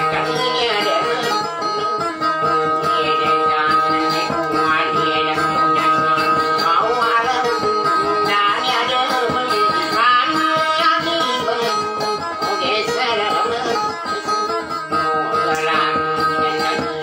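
Amplified acoustic guitar plucking a continuous melody, with a voice singing a wavering line over it and a steady high tone running underneath.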